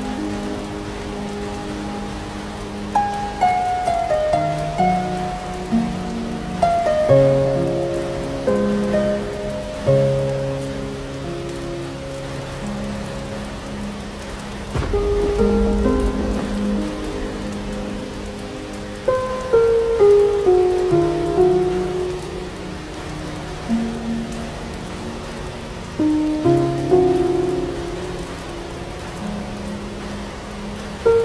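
Steady rain with slow, gentle instrumental music of single notes laid over it, and a low rumble of thunder about halfway through.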